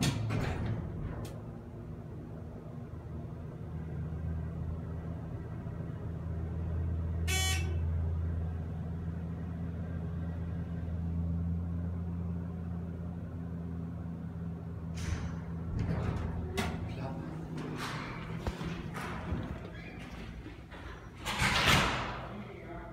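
ThyssenKrupp Signa4 hydraulic elevator car descending with a steady low hum. A single short, high ding sounds partway through. The hum stops about two-thirds of the way in, followed by scattered clicks and knocks as the car stops and the sliding doors work, with a louder clatter at the end.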